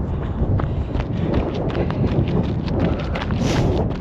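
A runner's footfalls on a paved path, a quick steady rhythm of knocks, under a steady low rumble of wind on the microphone.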